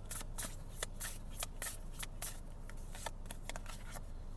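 Tarot cards being shuffled by hand: a run of irregular quick clicks and flicks of the cards, over a steady low hum.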